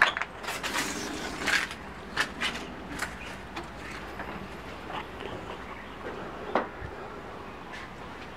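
A door creaking and knocking as it is opened and passed through. The creaks and knocks are bunched in the first three seconds, then come only now and then, with one louder knock about six and a half seconds in.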